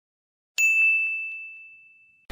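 A single bright ding sound effect for an animated logo, struck about half a second in and ringing down over about a second and a half, with a few faint ticks under the decay.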